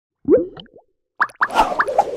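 Cartoon-style sound effects for an animated logo. One short rising pop comes about a quarter second in, then a pause, then a quick run of rising pops with a swish from a little past halfway.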